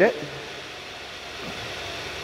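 2016 Hyundai Santa Fe Sport's 2.4-litre four-cylinder engine idling steadily.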